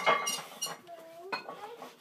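Loaded steel barbell settling onto the power rack's hooks after a squat set: weight plates clinking and ringing as they come to rest, with another metal clank later on.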